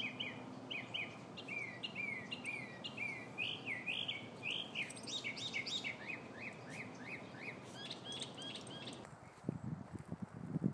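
A songbird singing a long series of quick downslurred chirps, about two or three a second, breaking into a faster, higher flurry in the middle. The song stops about a second before the end.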